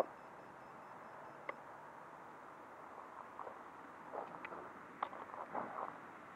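Faint, irregular footsteps on gravel and grass, with a single soft click about one and a half seconds in; the quad's motors and buzzer are silent.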